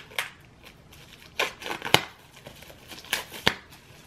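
Plastic shrink-wrap being torn and peeled off a small cardboard product box: several short crackling tears and rustles, the sharpest about two seconds in.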